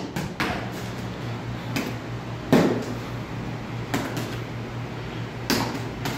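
Boxing gloves slapping against a defender's forearms and hands as punches are blocked: about six sharp smacks at irregular intervals, the loudest about halfway through, over a steady low hum.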